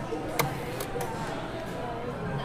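Soda fountain dispenser worked by hand, giving one sharp click about half a second in, followed by two fainter ticks.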